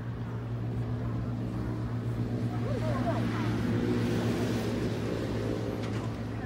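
A low, steady engine hum, with a rushing noise that swells and fades around the middle, and brief faint voices.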